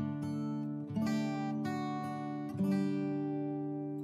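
Background music: acoustic guitar strumming chords, with the chord changing about every second.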